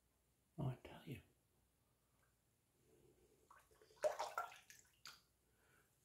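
Faint, raspy scraping of a 1921 Gillette New Improved open-comb safety razor cutting lathered stubble in short strokes, in two brief clusters: about half a second in and again around four seconds in.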